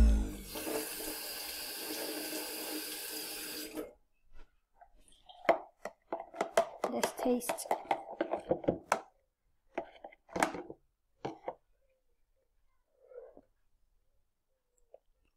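Electric centrifugal juicer whirring for about four seconds, then stopping abruptly. After that, juice drips from the juicer's spout into a plastic jug in a run of small plinks and taps.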